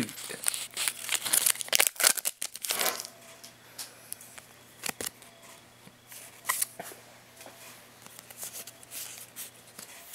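Foil Pokémon booster pack wrapper being torn open and crinkled, a dense crackle for the first three seconds. After that, quieter handling of the cards with a few scattered clicks.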